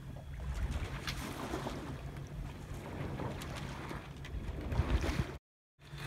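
Wind buffeting the microphone over the wash of water along the hull of a small sailboat under way, as a steady low rumble and hiss. It cuts off abruptly near the end.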